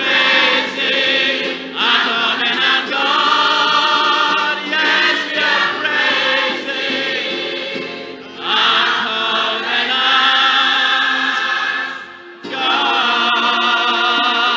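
Large choir singing a gospel song in full voice, line by line, with short breaks between phrases about two, eight and twelve seconds in.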